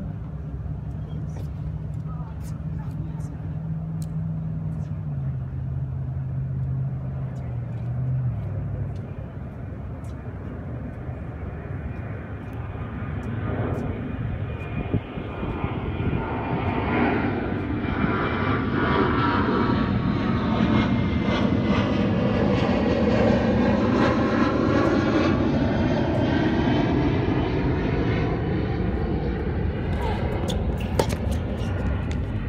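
A fixed-wing aircraft passing overhead: its engine noise builds from about twelve seconds in and stays loud for the last third, sweeping in pitch as it goes over. Sharp ticks of tennis balls struck by racquets sound in the first several seconds.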